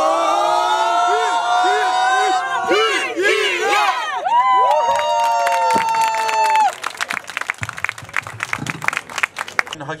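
A small group cheering together after a hands-in huddle: a long shout that rises in pitch, then whoops and one long high held cry. The cheering gives way to hand clapping for the last few seconds.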